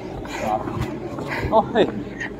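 People's voices over a steady background of street noise, with a falling vocal glide near the end.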